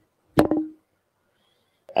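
A single short knock, a deck of tarot cards set down on a table, with a brief ring dying away within half a second.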